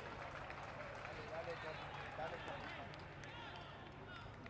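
Faint field sound of a professional football match in an empty stadium: players shouting and calling to each other across the pitch, many short overlapping voices over a low steady hum.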